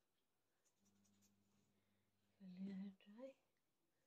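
Mostly near silence, with faint rubbing of hands through wet hair, then a short murmured sound from a woman's voice about two and a half seconds in.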